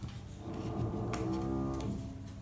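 A drawn-out, low hummed 'mmm' in a woman's voice, lasting about a second and a half, with a couple of soft clicks of playing cards being handled.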